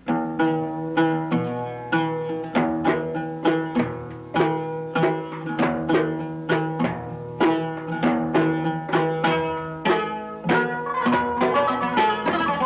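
Oud, kanun and dumbek playing a Turkish zeybek dance tune in a nine-beat rhythm: quick plucked string melody over hand-drum strokes, starting at once.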